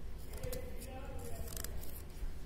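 A thin pointed carving tool scoring and scraping pumpkin flesh in a few short scratchy strokes.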